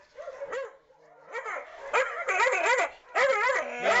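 A dog yelping and crying in a rapid string of high cries that bend up and down, starting about a second in and getting loud: the cries of a terrified dog in distress.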